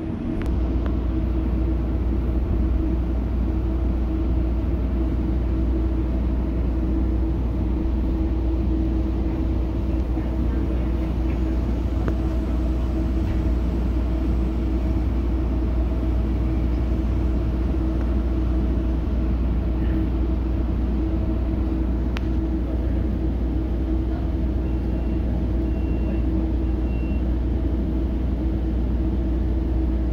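Steady low rumble and drone inside a Metrolink commuter-train passenger car rolling along, with a constant humming tone over the running noise. Three faint short high beeps sound near the end.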